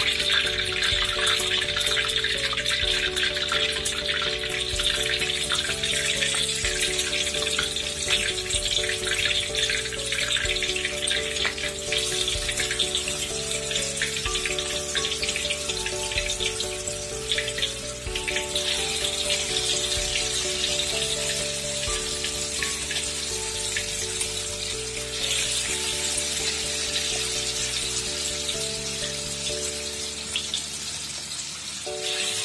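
Tofu patties frying in hot oil in a wok: a steady sizzle with many fine crackles, under background instrumental music of slowly changing held notes.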